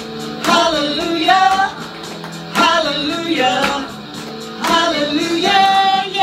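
Women singing a worship song over instrumental accompaniment with a light regular beat.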